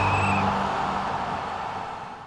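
Outro logo-animation sound effect: a noisy whoosh with a low hum underneath, fading steadily away.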